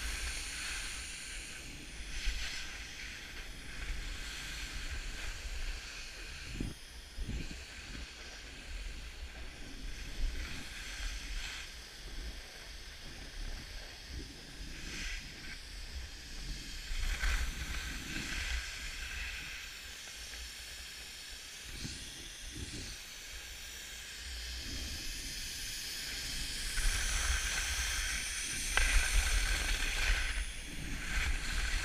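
Skis sliding and scraping over groomed snow during a fast downhill run, a continuous hiss with occasional knocks, with wind rumbling on the microphone. It grows louder near the end.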